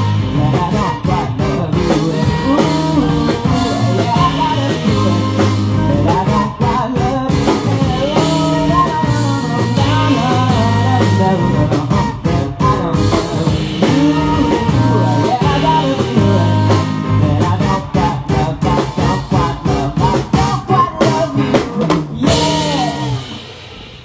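Live rock band playing an instrumental passage, with a saxophone over electric guitars, bass and drum kit. Near the end the band plays a run of short stabbed hits, then closes on a crash that rings out and fades.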